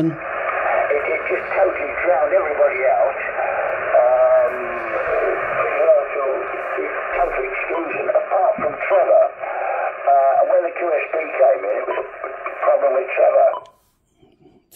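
Single-sideband voice received on the 40-metre amateur band and played through an Icom IC-706MKII transceiver's speaker. It is a radio operator talking, heard thin and telephone-like, and it cuts off suddenly shortly before the end.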